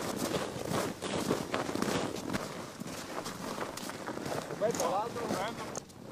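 Several people's boot footsteps on packed snow, an irregular run of steps, with indistinct voices speaking briefly, most clearly near the end.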